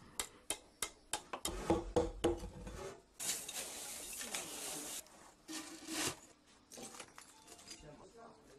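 Ceramic clinks and knocks as fired-clay saggars and their lids are handled, with about two seconds of gritty scraping in the middle, like pieces being pushed over a gravel floor.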